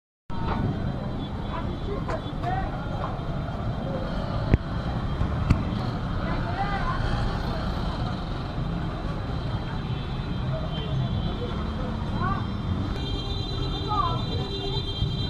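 Busy street ambience: a steady rumble of traffic and vehicle engines with scattered background voices, and two sharp clicks about four and a half and five and a half seconds in. A steady tone joins near the end.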